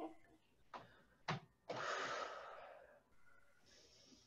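A woman breathing hard through an overhead triceps extension: two short sharp sounds in the first second and a half, then one long breathy exhale lasting about a second, and a faint breath near the end.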